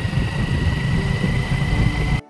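Motorcycle being ridden along a road: its engine running under a heavy, uneven rumble of wind on the microphone, with a faint steady high whine through it.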